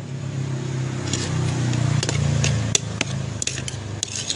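A vehicle engine passing close by, its low hum growing louder for about two seconds and then fading, with a few sharp clicks of metal cutlery against a plate in the second half.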